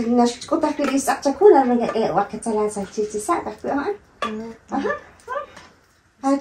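Speech only: people talking back and forth, in short phrases that thin out toward the end.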